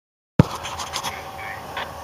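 Handheld camera being handled on the microphone as recording begins: a sharp click, then a few scratches and clicks over a low steady background hum.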